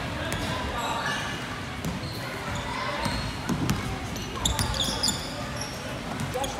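Basketball being dribbled on a hardwood gym floor: irregular sharp bounces, echoing in the large hall. Sneakers squeak briefly on the floor a little past the middle.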